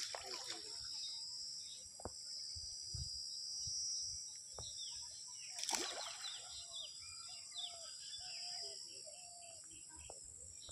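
Splashes in pond water: one right at the start and a louder one about six seconds in. Birds chirp after the second splash, over a steady high hiss.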